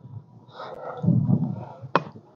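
A man's low, muffled murmur, then a single sharp click near the end.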